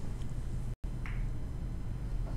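Room tone: a steady low hum with no speech, cut by a brief total dropout of the recording a little under a second in.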